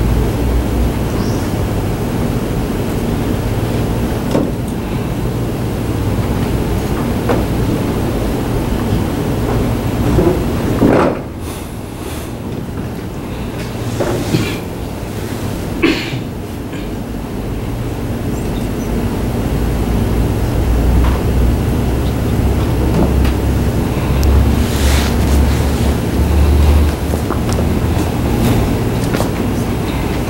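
Steady low rumble of room background noise, with a few scattered soft knocks and clicks.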